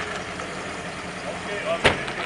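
Outdoor parking-lot background noise with a steady low hum and faint voices, and one sharp click just before the end.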